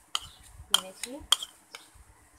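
Steel spoon clinking against a steel bowl of malpua batter: four sharp clinks about half a second apart.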